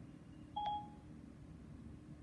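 A single short electronic beep from an iPhone about half a second in: Siri's tone as it stops listening to a spoken command.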